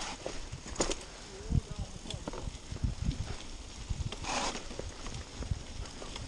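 Mountain bike ridden down a dirt forest trail: uneven knocks and rattles as it goes over bumps and roots, with rushing wind noise on the microphone and a short hissing burst about four seconds in.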